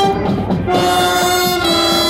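Brass marching band of tubas, euphoniums and trumpets playing long held chords, moving to a new chord about two-thirds of a second in.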